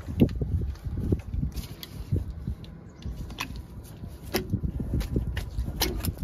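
Scattered small metal clicks and scrapes as a hook tool works a cotter pin out of a trailer hub's castle nut, over a low steady rumble.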